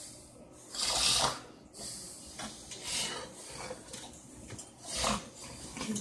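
Heavy, hissing breaths from a man lying unresponsive after a seizure, one roughly every two seconds: laboured breathing of the post-seizure state.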